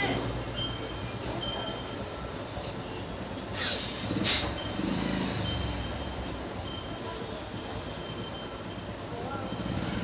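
Hands rubbing the skin of the face and forehead during a head massage, with two short rustling swishes about three and a half to four and a half seconds in, over a steady low rumble.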